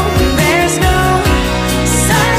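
Country-pop song: a woman sings the line 'now I know there's no such…' over a steady full-band accompaniment.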